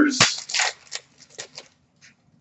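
Hockey trading cards being flipped through by hand: a quick run of short rustles and flicks that stops about a second and a half in.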